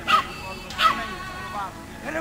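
A three-and-a-half-month-old mudi puppy barking: two short, high-pitched barks about three-quarters of a second apart.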